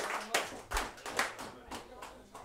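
Applause from a small audience, scattered clapping that dies away.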